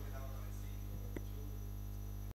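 Steady electrical mains hum from the sound system, with a couple of faint knocks about a second in as someone rises from the table.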